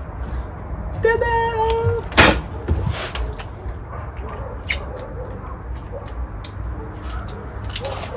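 Tools being rummaged and handled in a search for a tape measure, giving a few sharp knocks; the loudest comes about two seconds in. A short held pitched sound comes about a second in.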